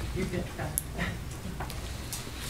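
Quiet room tone with a low steady hum, faint background voices and a few small clicks and rustles.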